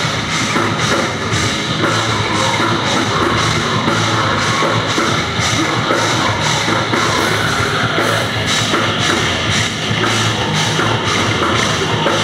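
Live heavy rock band playing loud, with distorted electric guitars, bass and a drum kit keeping a steady, driving beat.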